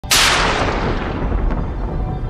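A sudden deep cinematic boom hit. Its bright reverberant tail fades over about a second and a half, leaving a low rumble.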